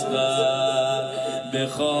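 A madah chanting a Persian religious mourning elegy in a slow melodic line, with a short break about one and a half seconds in.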